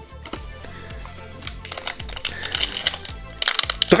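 Crinkling of a foil Pokémon booster pack wrapper being handled, a rustle of short crackles from about a second and a half in to shortly before the end, over steady background music.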